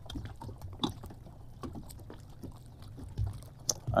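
Small lake waves lapping, with a steady low rumble and a scatter of soft clicks.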